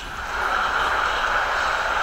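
Steady background hiss of a voice-message recording in a pause between sentences, even and unbroken, with no other event.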